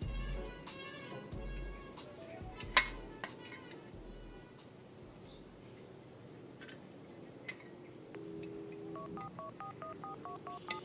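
Quiet background music, with a melody of short stepped beeps near the end. One sharp metallic click about three seconds in as the stove's steel casing and burner tubes are handled.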